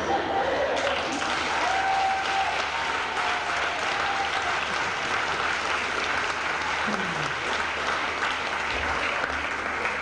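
Audience applauding steadily in a hall, with a voice or two calling out over the clapping.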